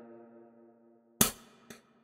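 The tail of a rap beat's playback: a held synth chord dies away over about a second after the music stops. It leaves near silence, broken about a second in by a single short spoken word.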